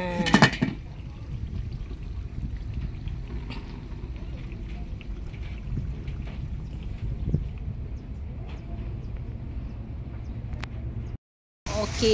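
A short voice at the start, then a steady low rush of wind and rain outdoors with a few faint ticks, cutting off abruptly near the end.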